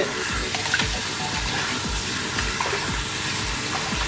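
Water from a salon handheld shower sprayer running into a filled shampoo basin as the basin water is changed: a steady hiss of spray. Background music with a low beat about twice a second plays underneath.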